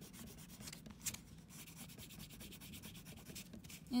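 Oil pastel scribbled rapidly back and forth on paper: a faint, quick, even scratchy rubbing, with one slightly louder stroke about a second in.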